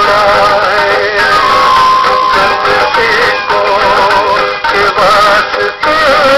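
Music: a Hindi song with a wavering sung melody over instrumental backing, and one note held steady for about a second partway through.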